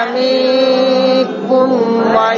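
A group of voices reciting the Qur'an together in chanted tajwid style. They hold one drawn-out vowel for over a second, then move on to the next syllables.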